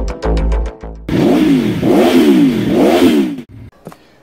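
A motorcycle engine revved in about four quick throttle blips, the pitch rising and falling with each, after a brief end of intro music.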